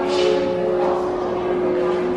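Attraction's ambient soundscape: a steady drone holding two tones over a low rushing noise.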